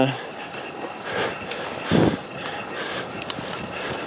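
Footsteps and twigs brushing against clothing while pushing through dense dry heath scrub, with a louder swish or thump about two seconds in.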